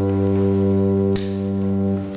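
Organ holding a sustained final chord. About halfway through, the bass note cuts off with a click, and the upper notes die away near the end.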